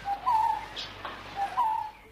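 A bird calling twice, each call a brief lower note followed by a longer, slightly higher note, about a second and a half apart, over a faint outdoor background.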